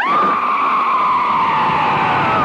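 A woman's long, high scream that starts suddenly and is held, its pitch sliding slowly down.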